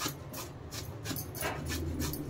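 Pumpkin being grated on a handheld metal box grater: quick rasping strokes, about four to five a second.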